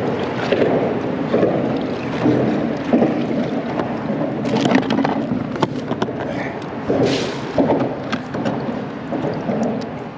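Water sloshing and slapping against the hull of a plastic sit-on-top kayak, in irregular surges, with a few light knocks.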